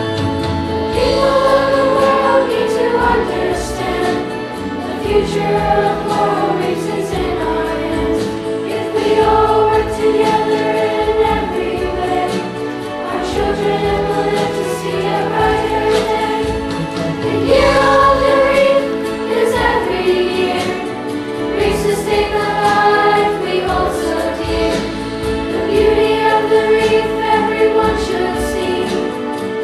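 Middle-school children's choir singing, with sustained notes that change every second or so.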